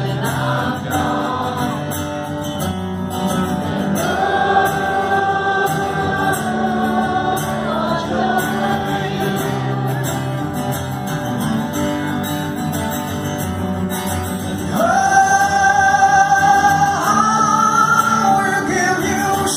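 Live rock ballad recorded from the audience: a male voice singing long held notes over guitar, with the room's reverberation.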